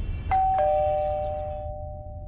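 Two-tone doorbell chime, ding-dong: a higher note and then a lower one a moment later, both ringing on and slowly fading.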